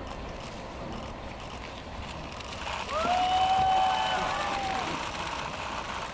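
Steady outdoor background noise, with one drawn-out high voice call in the middle that rises and then holds for about two seconds.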